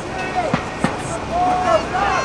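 Spectators' voices calling out in the background, over a low rumble of wind on the microphone.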